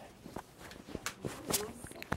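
Soft, irregular taps and knocks of people moving about, about half a dozen in two seconds.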